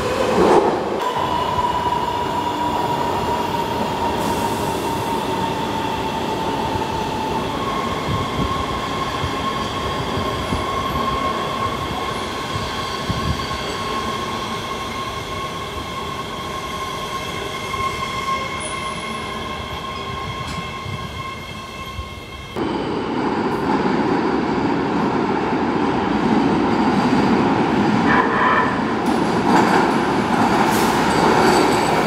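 Los Angeles Metro Rail subway train moving through an underground station: a steady high whine over rolling wheel noise. About three-quarters of the way through the sound changes suddenly to a louder, lower rumble as a train pulls in.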